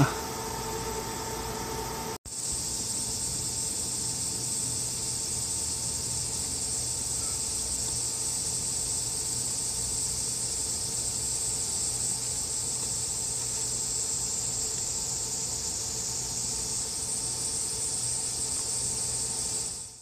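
A steady high-pitched insect chorus, crickets or similar, trilling evenly throughout. It follows a brief low steady hum that cuts off about two seconds in.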